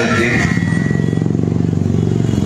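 A motor vehicle engine running close by with a rapid, even pulse, steady in pitch.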